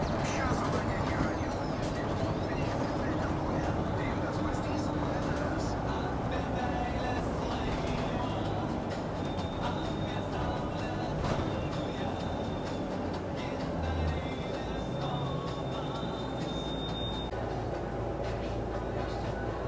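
City bus driving, heard from inside the cabin: steady engine and road rumble, with voices and music underneath. A thin high whine comes and goes in the second half.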